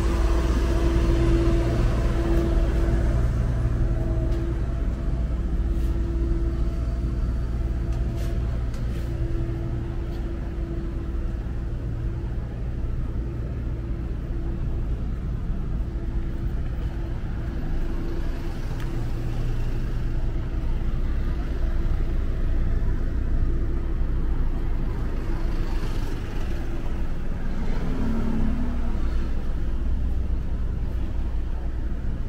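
City street traffic: a steady low engine hum with a continuous drone. It thins out in the middle and swells again near the end as vehicles pass close by.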